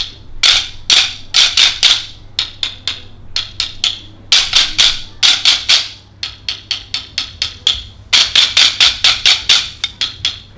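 A group of people clacking wooden sticks together in a rhythm exercise: many sharp wooden clicks in quick clusters and runs, softer for a couple of seconds past the middle, then busy and loud again near the end.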